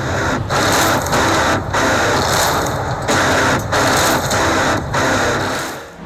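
Loud, dense roar from an action-film soundtrack showing a marching army, coming in surges broken by short dips about once a second.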